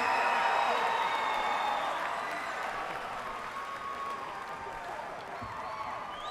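Concert audience applauding and cheering, dying down slowly.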